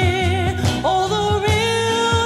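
Early-1970s Philadelphia soul record: held vocal notes with vibrato over a steady drum beat and bass, the voices stepping up in pitch a little under a second in.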